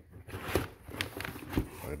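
Crumpled brown packing paper and a cardboard shipping box crinkling and rustling as they are handled, with several sharp crackles. A man's voice starts right at the end.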